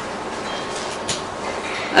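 Steady background noise of a lecture room, an even hiss and rumble with no voice, and a faint tick about a second in.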